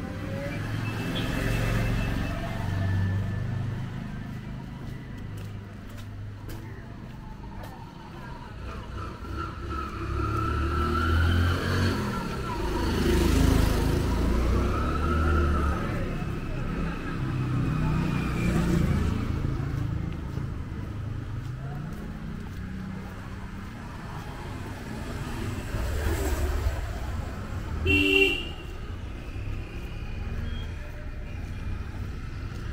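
Street traffic: cars and motorcycles passing one after another, their engine sound swelling and fading several times. A brief horn toot comes about two seconds before the end.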